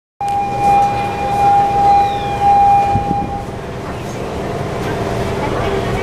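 A steady, high electronic warning tone, typical of a station departure buzzer, sounds for about three seconds inside a commuter train car and then stops. A short knock is heard near the end of the tone, and a steady hum of the car carries on after it.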